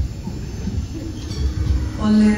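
Low, uneven rumbling room noise in a large hall, with a faint murmur of voices.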